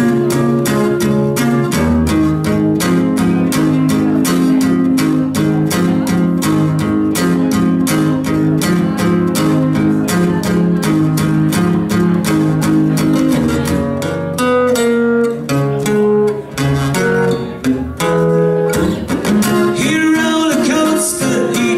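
Acoustic guitar strummed in a fast, steady rhythm, solo and without singing. Near the end the strumming thins out into separate picked notes.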